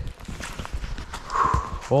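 Footsteps on dry leaf litter and loose stones of a steep bush track: a few uneven steps with rustling leaves underfoot.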